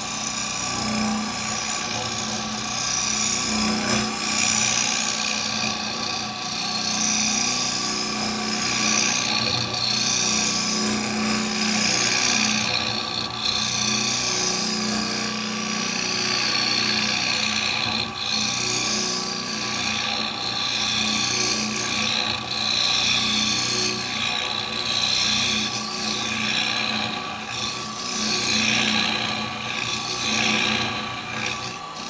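Wood lathe spinning a wet-wood blank at about 1800 RPM while a 12 mm square carbide cutter scrapes into its face in rough turning. A steady motor hum sits under a rasping cutting noise that swells and eases as the tool is pushed in and drawn back.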